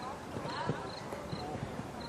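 Hoofbeats of a cantering horse on sand arena footing: dull thuds in the loping canter rhythm.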